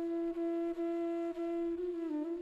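Background music: a flute-like wind instrument holds one steady note, broken by three brief gaps, then moves to a slightly different pitch near the end.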